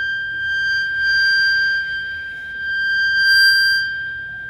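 A single steady high-pitched electronic tone with overtones, held at one pitch without a break, swelling and easing slightly in loudness.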